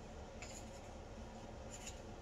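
Faint handling noise at a table: small clicks and rubbing as something is worked by hand, over a steady low room hum. There are two brief clicks, about half a second in and near the end.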